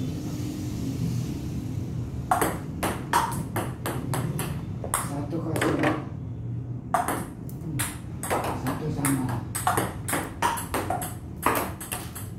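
Table tennis ball in a rally, clicking off the paddles and the table in quick succession. The clicks come in two spells, the first starting about two seconds in and the second about a second after the first stops.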